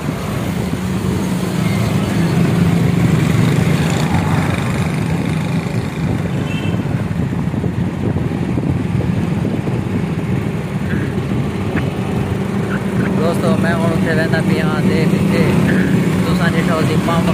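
Steady low rumble of road traffic, with motorcycles and other vehicles going by, continuous throughout. Indistinct voices come in near the end.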